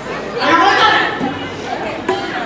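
Speech only: voices talking, more than one at once, with the loudest line of speech about half a second in.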